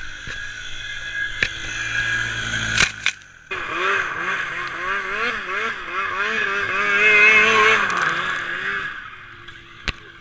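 A quad's engine running steadily for about three seconds, a sharp knock, then a snowmobile engine revving up and down over and over as the sled is ridden and turned through snow. The snowmobile is loudest about seven seconds in and eases off near the end.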